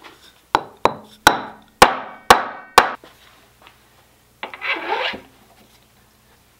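A hammer tapping a steel tool held on the end of a black walnut blank: six sharp, ringing strikes about half a second apart. A scraping rub of about a second follows near the end.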